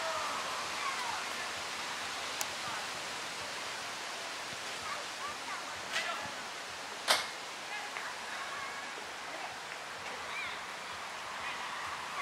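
Faint distant shouts of players over a steady hiss of open-air background noise, with a few sharp knocks of a football being kicked, the loudest about seven seconds in.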